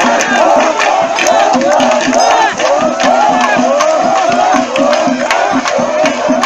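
Large crowd of men shouting and cheering in many overlapping calls, with sharp percussion strikes cutting through throughout.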